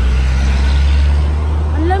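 Road traffic noise: a vehicle passing, its engine and tyre noise swelling over a steady low rumble.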